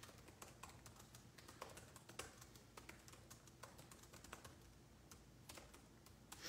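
Faint, irregular light clicks, a few a second, against near silence.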